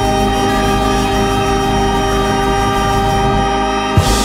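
A swing band's saxophone, trumpet and trombone with drums holding a long, steady final chord, cut off sharply with a last hit at the very end.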